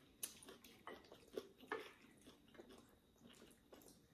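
Faint eating sounds at a meal: soft chewing and mouth noises with a few small, sharp ticks scattered through.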